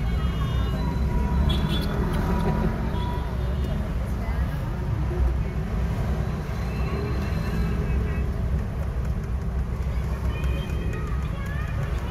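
Steady low rumble of a car's engine and road noise heard inside the cabin while driving, with quiet voices of passengers over it.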